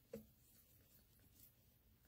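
Near silence with faint handling noise: a soft knock just after the start, then light rubbing and scratching as hands handle something.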